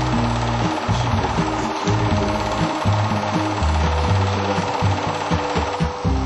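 A running film projector's rapid, even mechanical rattle, with music of low bass notes changing in steps underneath.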